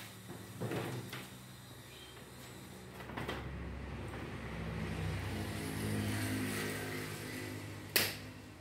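A few light knocks, then a low engine-like hum that swells and fades over about five seconds, with a sharp knock at the end.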